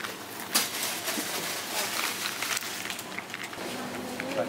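A few light plastic clicks and rattles from a baby's plastic rattle toy being handled, the sharpest about half a second in, over a steady background of shop noise.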